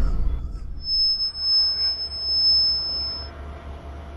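A single steady, high-pitched electronic tone, starting about a second in and cutting off after about two and a half seconds, over a low rumble that fades away.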